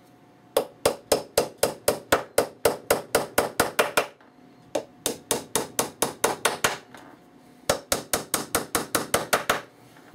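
Small hammer tapping small nails into the side of a thin wooden box: rapid light strikes about four a second, in three runs with short pauses between.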